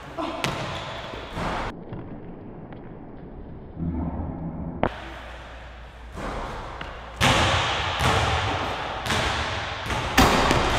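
Jumping at a basketball hoop: a hand catching the rim and feet landing on a hardwood gym floor, heard as several separate thuds and knocks spread through the clip, the loudest from about seven seconds on.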